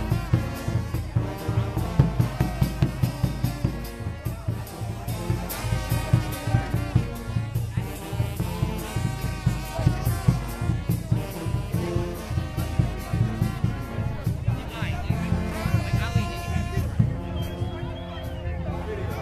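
Brass band playing, with trombones and trumpets over a steady drum beat, and crowd voices.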